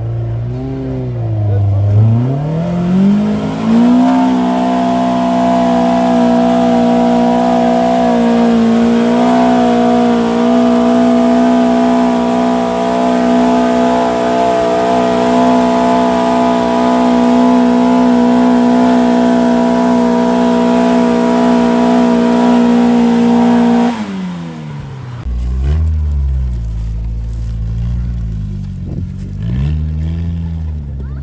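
Mk1 Ford Escort trials car's engine revving up over the first few seconds, then held at steady high revs for about twenty seconds as the car climbs the muddy, rocky section. It drops away suddenly near the end, leaving a lower, uneven engine note.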